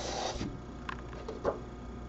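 A book page being turned by hand: a short paper rustle as the page slides over the one beneath, followed by a few faint light taps as it is laid flat.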